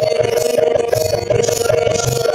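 Bengali devotional kirtan music: a harmonium holding steady notes, a drum beating and hand cymbals striking in a steady rhythm.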